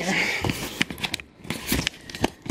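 Handling noise: a short rustle, then a string of light, sharp clicks and knocks as things are picked up and moved around a kitchen counter.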